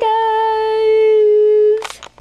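A young female voice holding a single steady hummed or sung note for nearly two seconds. It ends with a short burst of noise.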